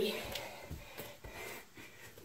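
Faint hard breathing and soft thuds of a person coming down from a burpee jump into a forearm plank on a carpeted floor.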